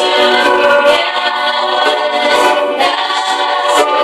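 A choir of voices singing a worship song, with long held notes.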